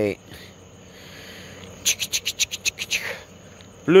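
A cricket chirping: one short rapid trill of about ten high pulses in the middle, over a faint steady background hiss.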